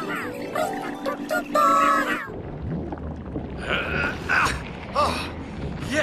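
Cartoon background music that cuts off about two seconds in. A low underwater rumble follows, with a few short, high, wavering squeaky cries.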